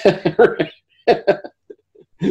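A man laughing in short chuckles, in two bursts with a brief pause between.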